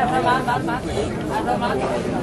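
People talking, with several voices overlapping in chatter.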